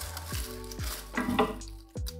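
Dry dead leaves and soil rustling and crackling as a hand pulls them out of a terrarium, loudest about one and a half seconds in.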